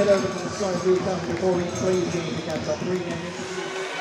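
Indistinct speech over low background noise. The background noise stops shortly before the end.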